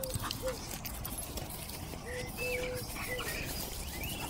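A dove cooing a three-note phrase twice, the middle coo held longest and the last one dropping. Small bird chirps sound higher up.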